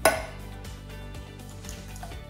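An egg is knocked once against the rim of a stainless steel mixing bowl at the start: a sharp tap with a brief metallic ring. Steady background music plays under it.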